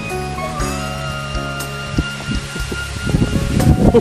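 Background music with long held notes. Near the end, rustling of grass stems and a short laugh.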